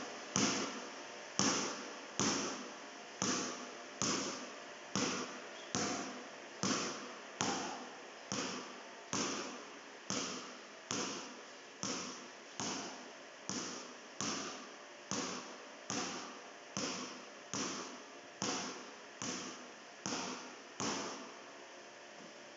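Basketball being dribbled on a hard court floor, bouncing at a steady pace of a little under one bounce a second, each bounce echoing briefly in the hall.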